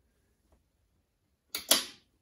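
A sharp clack of hard equipment being handled, two quick snaps close together near the end, with a faint tick about half a second in.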